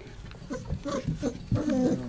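Young sheepadoodle puppies making several short, soft whimpers and grunts, scattered through the moment.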